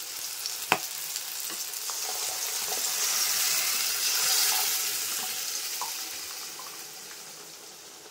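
Cooked dal poured from a pressure cooker into a hot kadai of tomato-onion tempering, sizzling. The sizzle builds to a peak about halfway through and then slowly dies down. There is one sharp knock less than a second in.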